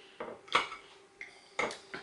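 Metal cutlery clinking and scraping against plates while eating, about four short clinks.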